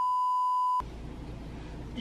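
A steady single-pitch electronic test tone, the TV test-card 'please stand by' tone, cutting off suddenly just under a second in. Low background hiss follows.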